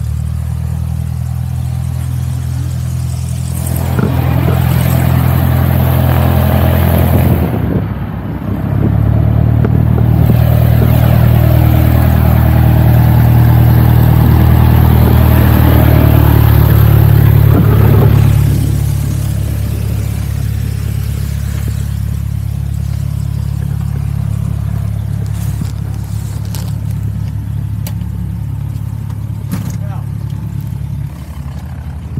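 A steady engine drone, louder for a stretch in the middle with a brief dip, on an airport ramp.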